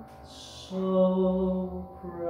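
A male baritone voice singing: a quick breath in, then one long sustained sung note.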